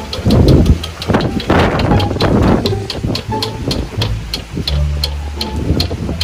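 A spinning game wheel ticking as the pegs on its rim flick past the pointer: a rapid, even ticking that gradually slows as the wheel loses speed. Background music with a low bass line runs underneath, and there are two louder rushes of noise in the first half.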